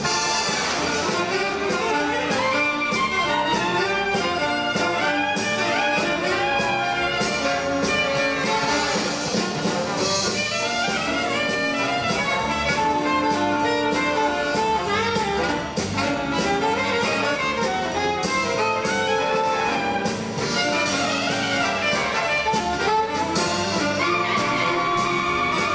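Live big band playing an instrumental passage: an alto saxophone solo over brass, reeds, piano and drum kit with steady cymbal time.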